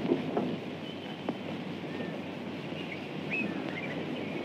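Old film soundtrack ambience: a steady low hiss with a few short, high bird chirps scattered through it, and one or two faint clicks.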